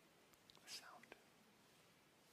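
Near silence: room tone, with one brief faint whispered sound a little under a second in.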